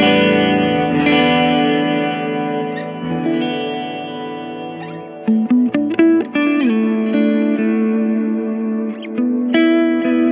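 Jackson Pro Dinky HT7 seven-string electric guitar played through its Fishman Fluence neck humbucker on voice 1. It rings out sustained chords, then plays a quick run of short picked notes about five seconds in, and settles onto held notes.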